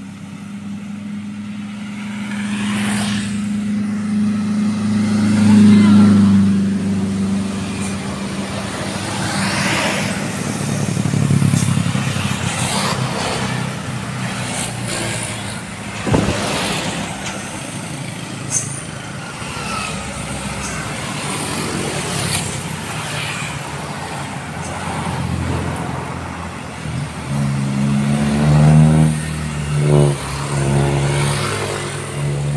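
Road traffic of motor scooters and cars driving past with engines running. The loudest pass comes about five seconds in, and near the end an engine rises in pitch as it accelerates.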